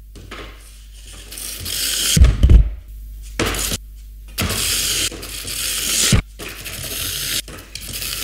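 Light balsa-wood model airframe sliding fast across a wooden tabletop, a scraping hiss, in several short runs with a couple of knocks as it is set down or stops. It is unpowered: no motor is fitted yet.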